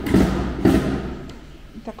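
Footsteps on a tiled floor: two thuds about half a second apart in the first second, walking pace, then quieter.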